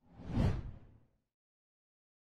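Whoosh sound effect for a graphic transition: one swell, heaviest in the low end, that peaks about half a second in and dies away by just over a second.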